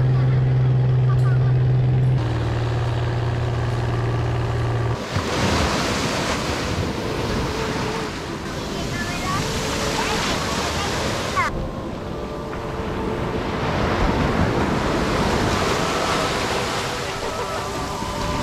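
A longtail boat's engine drones steadily for about five seconds, dropping slightly in pitch about two seconds in. It then gives way to surf washing up a beach, with wind buffeting the microphone and faint voices.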